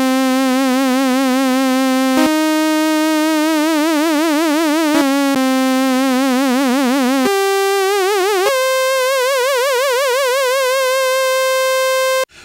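ASM Hydrasynth playing a single-note line of held notes, with vibrato from an LFO on oscillator pitch controlled by the mod wheel. The vibrato comes in and grows deeper and faster as the mod wheel is pushed up, then stops near the end, leaving the last note steady.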